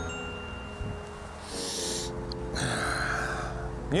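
Two breathy hisses, each under a second long, from an animatronic stegosaurus model, like an animal exhaling, over a steady low held tone.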